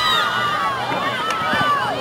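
Crowd at a field hockey match shouting and cheering, many voices overlapping at once with no single speaker standing out.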